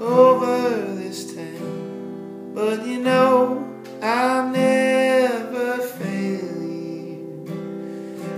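Acoustic guitar strummed under a man singing long, drawn-out phrases, with the guitar carrying on alone near the end.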